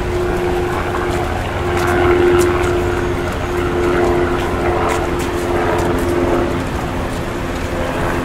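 Busy city street ambience: a steady low traffic rumble under a held engine hum, with a murmur of voices.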